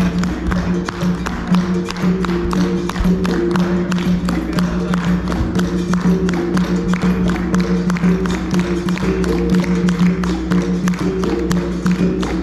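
Capoeira roda music: berimbau and atabaque drum playing, with the circle clapping along. Regular sharp claps sound over a steady low tone and shifting notes above it.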